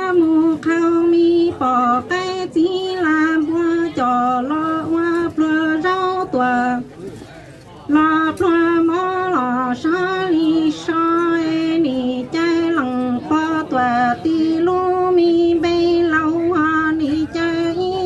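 A woman singing kwv txhiaj, Hmong sung poetry, solo into a microphone. She holds long, wavering notes that step down in pitch at the end of each line, with one longer breath pause about seven seconds in.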